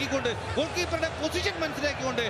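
A male football commentator speaking continuously in Malayalam, with the pitch of his voice rising and falling.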